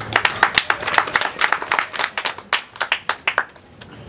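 A small audience clapping, the separate claps dying away near the end.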